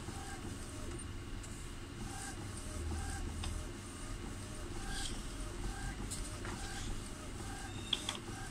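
Epson L120 inkjet printer running as it prints a head alignment pattern: a steady low mechanical hum with short faint tones and light clicks recurring about once a second.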